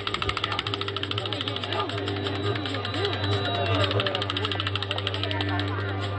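Indistinct talking over a steady low hum and a fast, even buzzing tick that runs through the sound.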